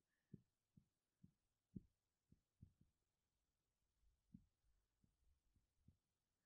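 Near silence with about ten faint, irregular low thuds as a marker is pressed onto a writing board in handwriting strokes.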